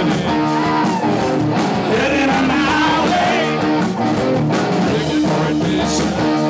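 Live rock band playing loud: electric guitar over bass and drums, with a wavering melodic line through the middle.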